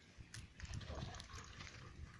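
Faint scuffling of two Kangal dogs play-fighting on grass, with a few short clicks and a low rumble.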